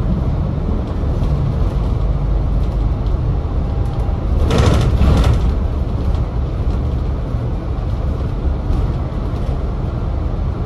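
Volvo B5TL double-decker bus on the move, heard from inside: a steady low rumble of its four-cylinder diesel and the road. About halfway through comes a brief, louder rushing sound.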